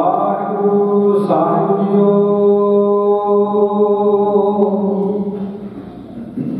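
A man's voice chanting Gurbani into a microphone in long, held notes, with a short break about a second in, trailing off near the end.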